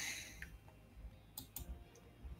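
A handful of faint clicks from computer input at a desk, the sharpest two close together about one and a half seconds in.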